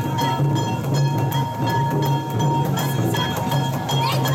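Festival float music: a drum and clanging metal beaten in a steady, quick rhythm, with a high ringing tone over it.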